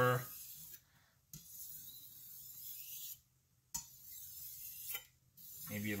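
Steel knife blade dragged gently back and forth over a wet Naniwa Chosera 3000-grit whetstone, a soft scraping hiss in a few long strokes with short pauses between them, smoothing out the burr on the edge.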